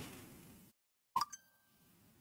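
A single short electronic plop about a second in, followed by a brief thin ringing tone, like a device notification sound; otherwise near silence.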